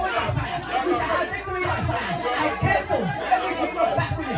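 Speech only: a man praying aloud into a microphone, with many voices praying aloud at the same time.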